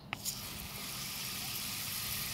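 A click, then a garden hose spray nozzle running with a steady hiss of water spraying onto potted succulents and gravel.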